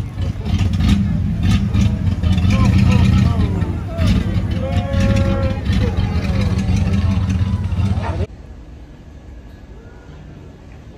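Engine of a vintage flatbed truck rumbling as it rolls slowly past at close range, with people's voices calling out over it. The sound drops off suddenly about eight seconds in.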